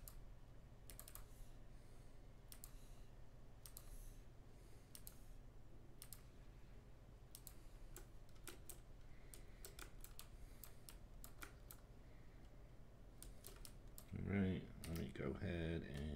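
Scattered clicks and key taps from a computer keyboard and mouse, over a low steady hum. A short stretch of voice comes near the end.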